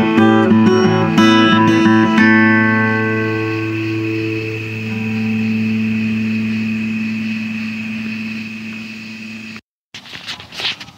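Acoustic guitar playing the last few picked notes of a piece, then a final chord left ringing and slowly dying away for about seven seconds. The sound cuts off suddenly near the end.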